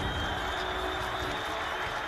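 A studio audience applauding, a steady patter of many hands clapping.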